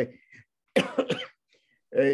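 A man coughs once, briefly and sharply, about three-quarters of a second in, in a break in his speech.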